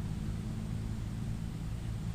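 Steady low hum with a faint hiss underneath, with no distinct events.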